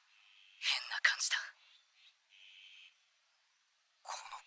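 Brief dialogue from the anime episode, filtered so that only its upper range comes through: thin and whispery, a short spoken phrase about a second in, then a faint trace.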